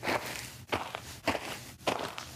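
Footsteps walking at a steady pace, four steps about half a second apart.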